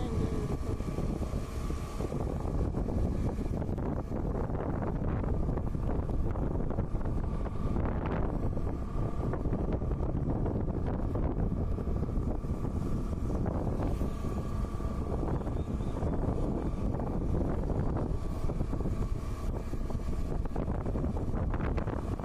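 Wind rushing over the microphone of a riding motorcycle, with the engine running steadily underneath.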